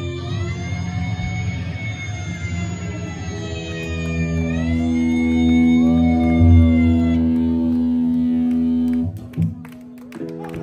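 Live punk rock band holding a long, loud ringing chord, with electric guitar tones gliding up and down in pitch. It stops abruptly about nine seconds in, and a few scattered hits follow.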